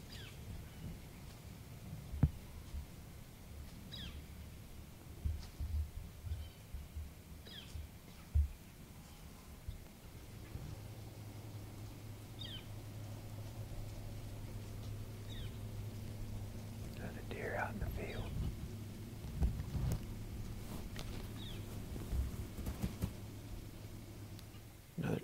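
A small bird's short, high, falling chip call, repeated every few seconds, over a quiet woods background. A couple of sharp low bumps come early on, and a brief soft whisper comes near the end.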